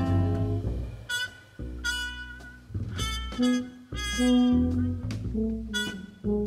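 Live jazz big band with brass, reeds and double bass: a held ensemble chord breaks off just under a second in, then short, punchy ensemble notes come about once a second over bass notes.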